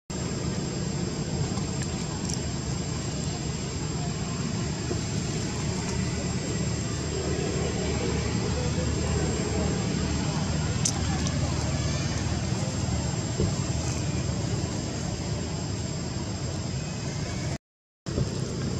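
Steady outdoor background noise with a low rumble, with no distinct calls or knocks standing out; it cuts off suddenly just before the end.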